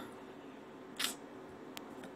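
A phone being handled by hand: a brief soft rub about a second in, then a faint click.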